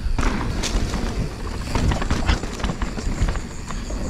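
Full-suspension mountain bike on Maxxis Assegai tyres rolling down a dirt trail: a steady tyre-and-trail rumble with scattered knocks and rattles as it rides over bumps.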